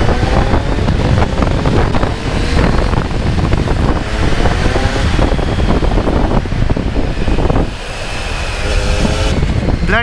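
Kawasaki Z900's inline-four engine pulling up a hill road, its note climbing several times as the rider accelerates and easing off briefly about three-quarters of the way through. Heavy wind buffeting on the microphone rides over it.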